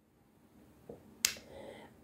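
A single short, sharp click a little over a second in, with only faint sound around it.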